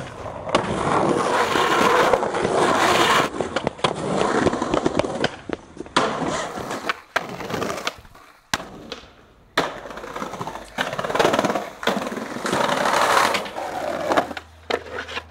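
Skateboard on concrete and steel: urethane wheels rolling on pavement, trucks grinding down metal handrails, and sharp clacks of the board popping and landing. The sound comes in several cut-together stretches, with a brief quiet dip a little past halfway.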